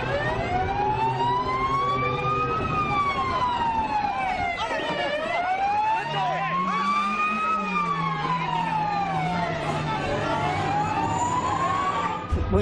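Police car siren wailing, its pitch slowly rising and falling about every five seconds.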